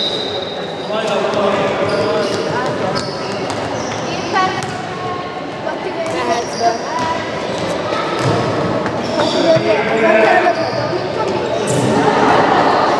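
A handball bouncing and thudding on a wooden sports-hall floor during play, with voices and shouts echoing through the hall. A referee's whistle tone cuts off about a second in.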